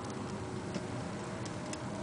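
Audi S8's 5.2 V10 idling cold at about 1000 rpm, heard from inside the cabin: a steady low rumble with a few faint, irregular light ticks.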